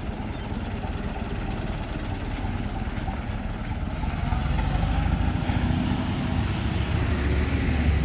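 The engine of an antique open-cab fire truck running as the truck drives slowly past at low speed. The low, rough rumble grows louder from about four seconds in as the truck comes closer.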